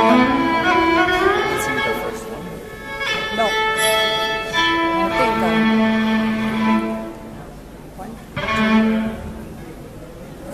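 A solo fiddle bowed in long held notes, with slides in pitch leading into some of them; the playing grows quieter about seven seconds in, with one more held note before the end.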